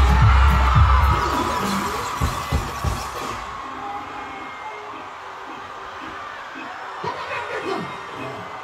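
Live concert sound on a phone recording: loud music with a heavy bass beat over a cheering, screaming crowd. The bass drops out about a second in, and the whole sound turns quieter and duller at about three and a half seconds, leaving mostly crowd noise with faint music.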